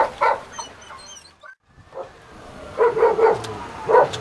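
A dog barking in short bursts: a couple of barks at the start, then a quick run of barks about three seconds in.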